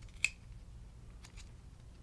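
Scissors snipping perforated thermoplastic splint material while trimming an orthosis edge: one sharp snip about a quarter second in, then two faint snips a little past a second.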